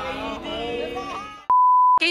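A crowd of bus fans singing a chant together, cut off about a second and a half in by a loud, steady high-pitched beep lasting half a second that replaces all other sound: an edited-in censor bleep.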